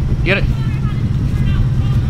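2020 Ford Mustang GT's 5.0 Coyote V8 with its mufflers deleted, running at low revs with a loud, low, choppy exhaust rumble as the car rolls slowly past.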